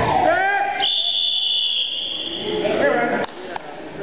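Shouts, then a single steady high-pitched signal tone for about a second, marking the end of the wrestling bout. Voices resume after it.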